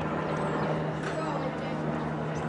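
A motor vehicle engine running with a steady low hum, under faint voices of players and spectators.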